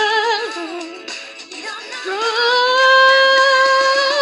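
High singing voice with music: a short wavering phrase, then one long held note that slides up into place about two seconds in and is sustained with a slight vibrato.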